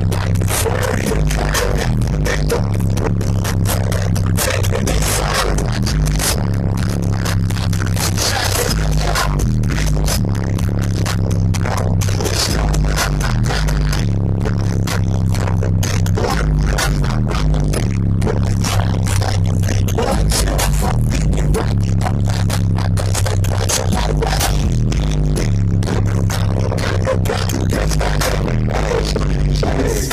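Bass-heavy music played very loud through two Sundown ZV4 12-inch subwoofers in a low-tuned ported box, heard inside the car's cabin, with a repeating pattern of deep bass notes.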